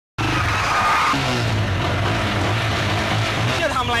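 Busy street traffic with a motorcycle engine running steadily, a brief high-pitched squeal within the first second, then a man's voice near the end.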